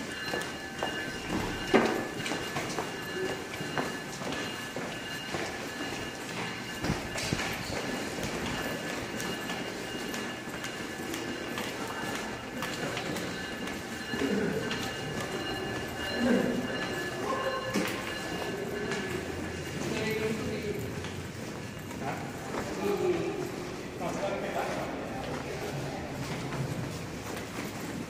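Footsteps of a crowd of commuters walking through a concrete pedestrian tunnel at a train station, with voices talking in the background and a faint steady high hum. Now and then there is a sharp knock.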